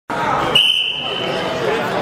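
A referee's whistle blows one steady blast of about a second, starting about half a second in, signalling the start of the wrestling match, over crowd chatter in a gymnasium.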